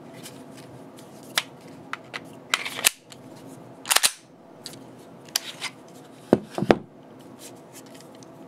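A Gen 4 Glock 19 pistol being handled: a series of sharp clicks and clacks, the loudest about four seconds in, then a cluster of heavier knocks near the end.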